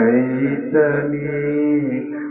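A male preacher chanting his sermon in a drawn-out melodic style, holding long sung notes into a microphone.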